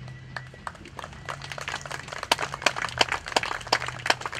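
Audience applause: scattered hand claps that start thinly and thicken to a steady patter of many claps about a second in.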